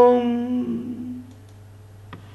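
A man's voice holding the last long sung note of a song, unaccompanied and on one steady pitch, dying away a little over a second in. After it only a faint, steady low hum of the room is left.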